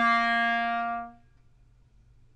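Clarinet sounding one low sustained note, held steady for about a second and then fading away, leaving a faint low hum.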